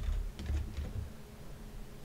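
A few quiet keystrokes on a computer keyboard, mostly in the first half second.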